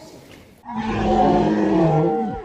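A person's voice making a loud, drawn-out low vocal noise close to the microphone, starting about half a second in and sinking slightly in pitch.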